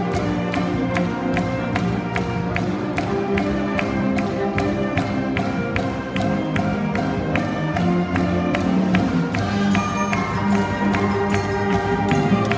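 A school wind band playing live, with brass and saxophones holding sustained notes over a steady percussion beat.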